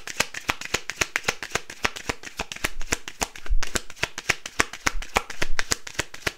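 A deck of tarot cards being shuffled by hand: a quick, uneven run of card clicks, several a second, with a couple of low thumps about three and a half and five seconds in.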